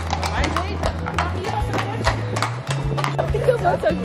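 Hooves of two horses clip-clopping on a paved street, a few sharp clops a second, over background music with a steady bass line.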